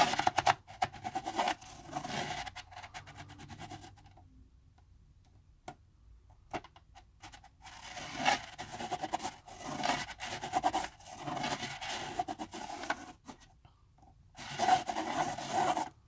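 Pencil scratching on paper as a plastic spiral-art gear is rolled around its toothed plastic ring, with a quick run of small scrapes and clicks. It stops for about two seconds a few seconds in, then carries on.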